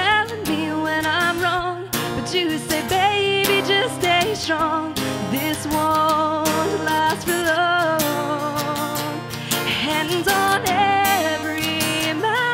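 A woman singing live while strumming an acoustic guitar, her held notes wavering with vibrato.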